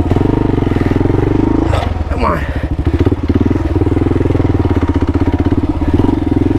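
Kawasaki KLR650's single-cylinder four-stroke engine running under throttle as the motorcycle rides a dirt trail. The engine eases off about two seconds in, then picks up again.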